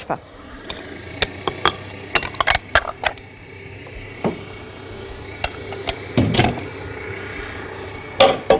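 Kitchen bowls and utensils clinking and knocking around a stand mixer bowl as flour goes into tart dough, a string of short sharp knocks with a longer, heavier scrape about six seconds in, over a faint steady hum.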